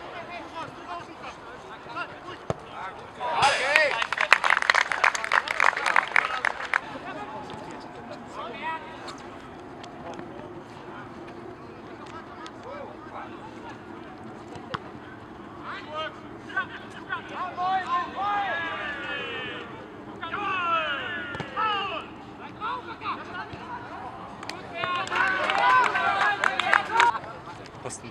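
Players and spectators shouting across an outdoor football pitch: a loud stretch of calling a few seconds in, then scattered shorter shouts later on.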